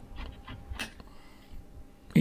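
Needle-nose pliers working a brake pad out of a six-pot front brake caliper: a few faint metallic clicks and scrapes, the sharpest a little under a second in.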